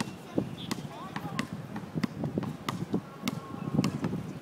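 A basketball bouncing repeatedly on a hard outdoor court, a string of sharp, irregularly spaced bounces as a child dribbles.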